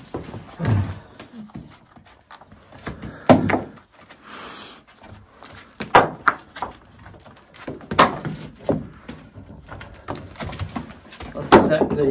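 Rubble stones being pulled by hand out of a filled-in stone doorway, knocking and thudding as they come loose and drop. There are about five separate knocks and a short rush of falling grit and dirt about four seconds in.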